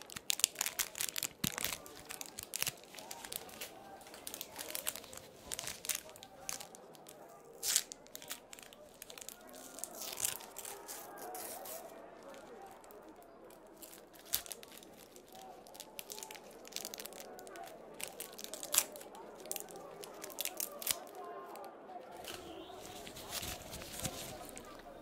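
Paper wrapper and backing of an adhesive bandage being torn and peeled by gloved hands: a dense run of crinkles and sharp ticks that thins out about halfway through.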